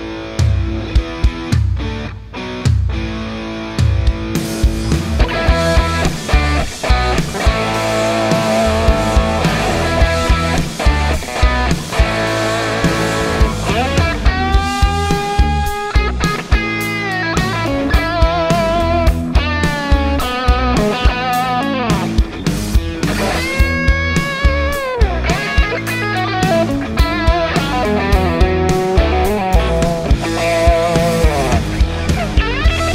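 Overdriven electric guitar playing a rock lead through a Kemper amp profile, with string bends and held notes in the middle. An EQ thins out the lows and low mids for a clear, "meedly" lead tone.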